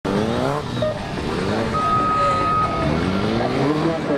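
Honda CB250R single-cylinder engine revving up as the bike accelerates, rising in pitch twice, near the start and again toward the end. A steady tone about a second long sounds in the middle.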